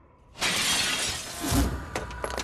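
A sudden loud shattering crash about half a second in, breaking debris clattering for over a second, with a deep thud near the end.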